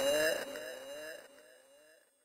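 Echoing tail of a processed, laughing voice sample closing an electronic dubstep track: short rising pitched notes repeat and fade out to silence within about a second and a half.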